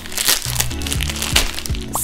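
Background music with a steady beat, under the crinkling of a clear plastic garment bag as it is handled and opened.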